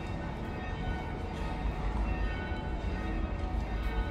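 Church bells ringing, their tones overlapping and lingering, over a steady low rumble.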